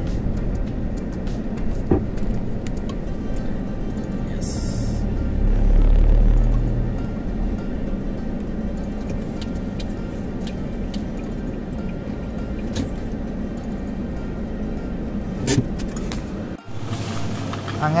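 Road and engine noise heard from inside a moving car's cabin, a steady low rumble that swells louder for a moment about six seconds in. It breaks off sharply near the end.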